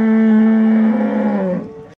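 A bull bellowing: one long call held at a steady pitch, fading out near the end.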